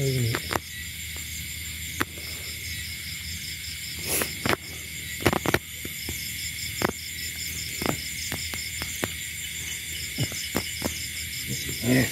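Night chorus of crickets and other insects: a steady high-pitched trilling with an evenly pulsing note, under occasional short rustles and clicks of grass being handled.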